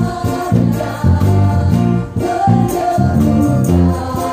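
Live worship band playing a gospel song: electric bass guitar and drum kit under group singing, the bass notes moving in a steady rhythm.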